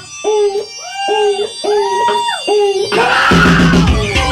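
Live punk band playing. The drums and bass drop out while a lone part plays a handful of short notes that slide up into pitch and bend down at the end, and the full band with drums comes back in about three seconds in.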